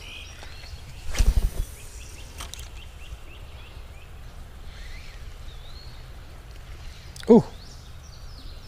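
Outdoor creek-side ambience: a steady background hiss with small birds chirping faintly and repeatedly. About a second in, a short burst of rustling and rumble from handling or wind on the microphone is the loudest sound.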